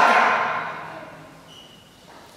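The end of a man's spoken phrase trailing off and dying away in a hall's reverberation, then a pause with faint room tone and a brief faint high tone about one and a half seconds in.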